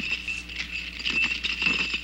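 Iron chain rattling and clanking furiously, shaken against its fastening. It starts suddenly and goes on as many small irregular clinks, with a thin steady high tone beneath.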